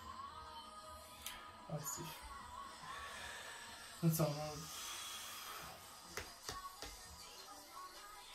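Quiet background music carrying a simple melody, with a few soft clicks in the last couple of seconds from playing cards being handled and laid on a playmat.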